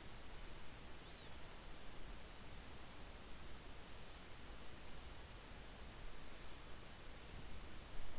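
Faint, scattered computer keyboard and mouse clicks over a steady low background hiss.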